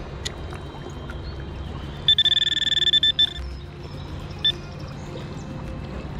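Handheld metal-detecting pinpointer beeping rapidly for about a second as it is held against a small metal gear, then one short beep, over the steady rush of a shallow river current.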